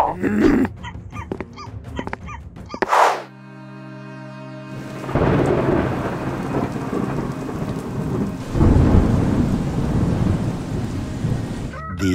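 Rain and thunder sound effect: steady rain noise with a louder rumble of thunder about nine seconds in. It is preceded by a quick rising whoosh about three seconds in and a brief steady low tone.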